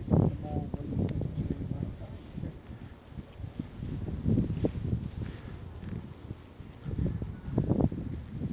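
Wind gusting on an outdoor microphone: an uneven low rumble that swells and fades every second or so.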